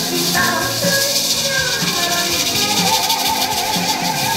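Lively music with maracas shaken along to it, giving a steady high rattle under the tune.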